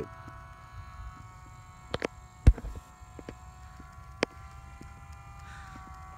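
Electric RC airplane motor and propeller whining steadily at a distance, dipping slightly in pitch near the end, with a few sharp clicks of handling noise.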